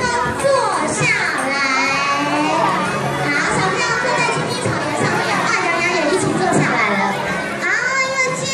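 A large crowd of young children chattering and calling out together, many high voices overlapping.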